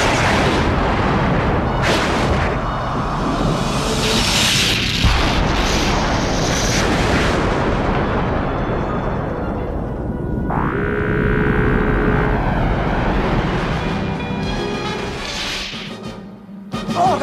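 Cartoon sci-fi sound effects over music: a dense, loud rushing rumble with a sharp boom about five seconds in. About ten and a half seconds in, a rising electronic whine sets in and settles into a held tone for a couple of seconds.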